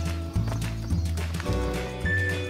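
Background music with a steady beat: low bass notes pulsing about twice a second under sustained melody notes and light percussion.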